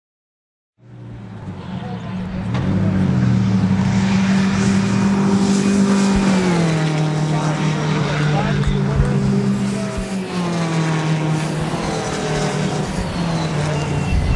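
Skip Barber open-wheel race car engine running hard at speed, starting about a second in, its pitch dropping in steps a couple of times.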